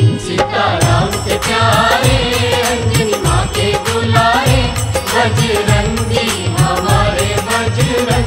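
Hindu devotional bhajan music to Hanuman: a melodic line over a steady repeating beat.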